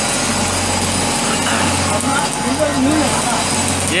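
Stick arc welding: the electric arc crackling and hissing steadily while a pipe flange is welded, over a steady low hum.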